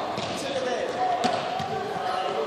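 A few sharp thuds of running feet on a sports-hall floor, with students' voices echoing in the large hall.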